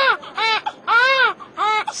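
Newborn baby crying just after delivery: four short wails that rise and fall in pitch, the third the longest. This is the cry that shows the baby has started breathing.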